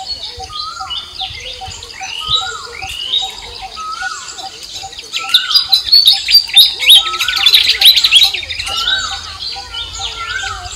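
Birds singing in a woodland chorus. One bird repeats a call that rises and falls about once a second over a steady pulsing note. A louder burst of rapid chattering comes from about five seconds in to near the end.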